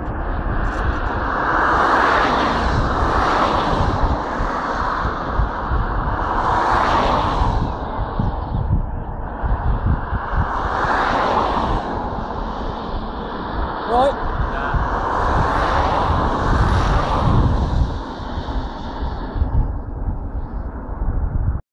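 Wind buffeting the microphone over a low rumble of diesel-hauled engineering train traffic, swelling and easing every four or five seconds. A brief rising squeak comes about fourteen seconds in.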